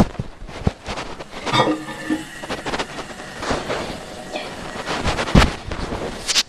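Handling noise: irregular knocks, clicks and rubbing with no steady rhythm, and a louder thump about five and a half seconds in.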